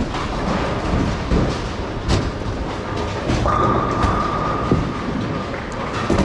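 Bowling alley din: the steady rumble of bowling balls rolling down the wooden lanes, with a few sharp crashes of balls into pins scattered through it. A steady high whine is heard for about two seconds in the second half.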